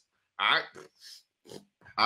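A man's voice: one short spoken word about half a second in, then a few brief breathy, nasal-sounding bursts from him before he speaks again.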